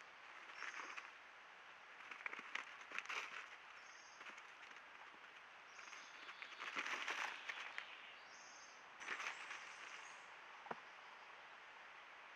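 Wild rabbits moving over dry leaf litter, in several bursts of rustling over a steady hiss, with a short high bird call repeated four or five times and a single sharp click near the end.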